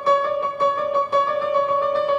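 Bösendorfer Imperial concert grand piano sounding one high note struck over and over, about three times a second, with the octave above it ringing along.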